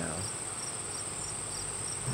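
Insects trilling: a steady, high-pitched chorus that holds unbroken.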